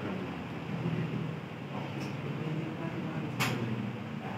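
Steady low background hum, with one sharp click about three and a half seconds in.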